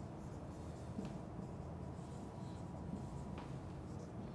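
Felt-tip marker writing on a whiteboard: faint strokes as a few words are written.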